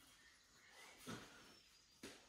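Near silence: room tone, with one faint, brief soft sound about a second in.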